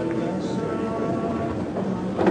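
Steady hall background: a hum holding several tones at once, with faint chatter under it.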